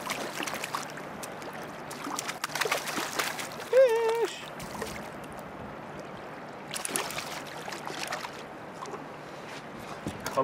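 A small, feisty fish splashing at the water's surface beside a fishing boat as it is played on the line and reached for by hand. The water sounds come in bursts about two to three seconds in and again about seven to eight seconds in. A short, high voice-like call sounds about four seconds in.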